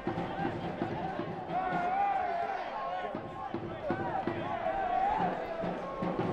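Raised voices carrying across a football ground, from players calling on the pitch and spectators, some of them drawn-out shouts, over the steady hum of the crowd.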